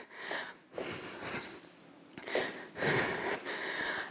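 A woman breathing hard while exercising: several audible breaths in and out, with a short quieter lull near the middle.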